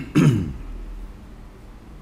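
A man coughing to clear his throat: a quick sharp catch, then a louder throaty sound falling in pitch, all over by about half a second in.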